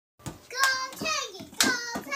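A young child's high voice calling out without clear words, with a couple of sharp knocks near the end.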